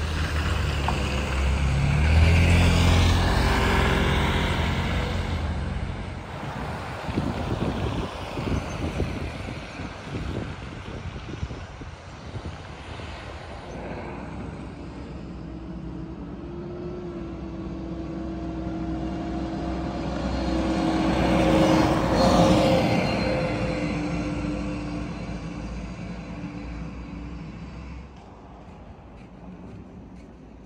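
Road traffic passing on a snow-covered street. A vehicle with a low engine drone goes by close in the first few seconds, and another passes about twenty-two seconds in, its sound swelling and fading, with quieter tyre and traffic noise between.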